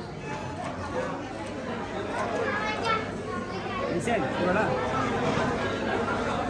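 Indistinct chatter of several people talking over one another in a hall, with no single voice standing out.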